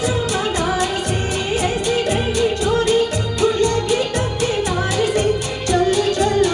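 Live singing of a Bollywood film song over a backing track, with a melodic voice line over an even beat of about four strokes a second.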